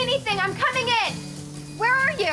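A girl's high-pitched wordless vocal sounds, nervous 'uh' and 'ooh' noises that rise and fall, in the first second and again near the end, over steady background music.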